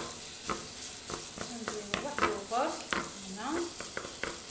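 Wooden spatula stirring in a stone-coated frying pan, knocking against the pan about twice a second with short squeaking scrapes, over a steady sizzle of chicken frying in oil.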